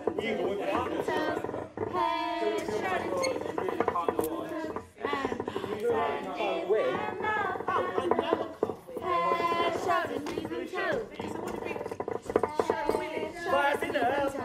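Several people's voices singing and calling out over one another, with no clear words.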